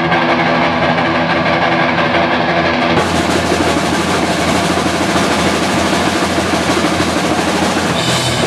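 Live rock band with loud distorted electric guitar. A ringing chord is held at first, then about three seconds in the full band comes in and the sound turns denser and brighter.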